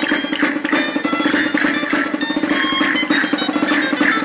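Gaita (Riojan double-reed shawm) playing a traditional dance tune over a steady low tone, with percussion beating an even, quick rhythm.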